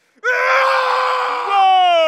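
A person screaming: a hoarse, rough scream that becomes a clearer cry about halfway through, sliding down in pitch toward the end.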